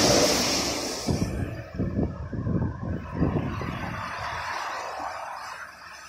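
Traffic passing on a wet road: a loud hiss of tyres on wet asphalt that fades after about a second, then irregular low rumbling knocks that die away toward the end.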